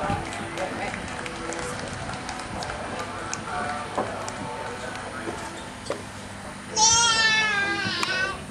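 A horse whinnies near the end, one loud, high, quavering call lasting about a second, over faint talking from people around the arena.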